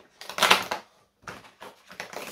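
Cardboard advent calendar door being pried and torn open with a pointed tool: a crackling tear about half a second in, followed by a few smaller scrapes and rustles.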